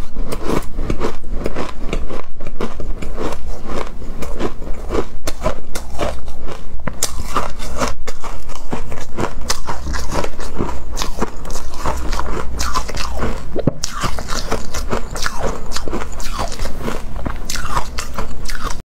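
Close-miked crunching of soft, snow-like ice being bitten and chewed, a dense, unbroken run of crisp crackling crunches.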